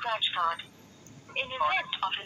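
A recorded phone call playing back through a Samsung phone's loudspeaker: an automated voice prompt in thin, telephone-quality sound, breaking off briefly about a second in, then speaking again.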